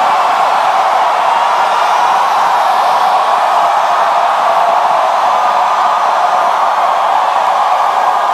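A large congregation shouting together at full voice: a loud, unbroken wall of many voices with no single voice standing out.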